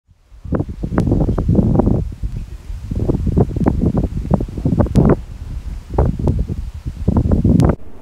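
Gusty wind blowing over the microphone and through the hedges and grain, surging and dropping in irregular gusts, with a few sharp clicks.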